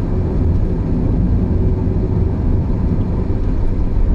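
Cabin noise of an Audi A6 with a 2.8-litre V6 cruising on a road: a steady low rumble of engine and tyres, heard from inside the car.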